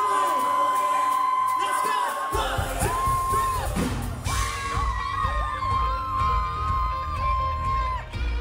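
Live pop-rock band playing amplified over a long held high note, with the bass and drums coming in heavily about two seconds in. Audience whoops and yells over the music.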